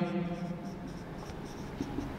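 Marker pen scratching across a whiteboard as a word is written out letter by letter.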